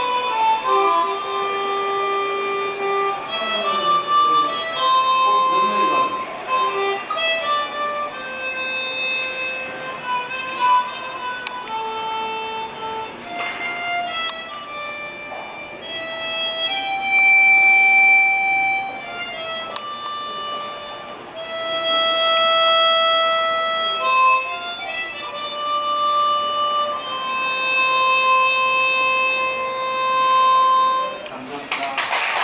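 Harmonica played solo: a slow melody of long held notes, some sustained for one to three seconds.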